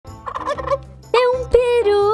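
A turkey gobbling: a quick rattling burst, followed by louder long held pitched calls.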